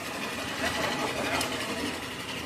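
An engine running steadily, with faint voices over it.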